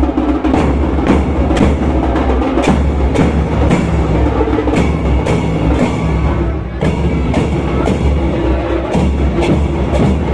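Procession bass drums and hand cymbals beaten together in a steady, even rhythm, about two to three strokes a second, with a heavy low drum boom under the crisp cymbal clashes.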